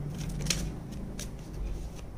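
Tarot cards being handled and shuffled by hand: a few light, short snaps and rustles of card stock.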